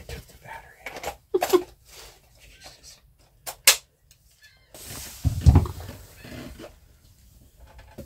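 Scattered clicks and knocks of a cordless impact driver and a metal ball-bearing drawer slide being handled, with a sharper click partway through. About five seconds in comes a person's breathy grunt lasting a second or two.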